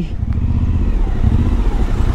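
Suzuki V-Strom 1050XT's V-twin engine running at low speed in city traffic, a steady low rumble heard from on the bike.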